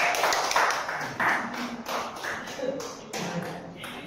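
A table-tennis ball bouncing over and over: a run of light, quick taps, about five a second, slowly fading.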